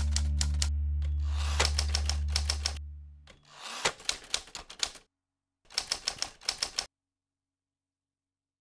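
Typewriter keystroke sound effect: several bursts of rapid clicks. The first burst plays over a low, sustained music chord that fades out about three seconds in.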